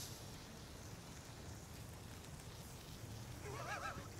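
Faint, steady sizzling of sliced zucchini and onion frying on a flat-top griddle, with a faint voice in the background near the end.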